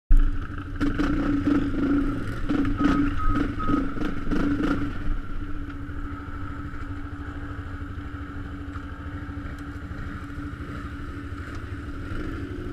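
Quad bike (ATV) engine idling with a steady hum, with knocks and clatter over the first five seconds before it settles into a quieter, steady idle.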